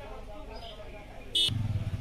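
Faint background voices, then about one and a half seconds in a short click and a low, evenly pulsing motor vehicle engine idling close by starts abruptly.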